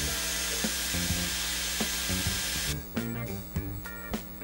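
Dyson Airwrap styler blowing air through its curling barrel while winding a section of hair: a steady rushing hiss that cuts off suddenly about two-thirds of the way in.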